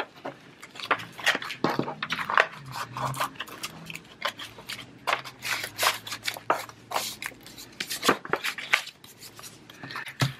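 Paper handling: a card-stock postcard sliding into a kraft paper envelope, with irregular rustles, scrapes and light taps on a desk as the envelope is handled and pressed flat.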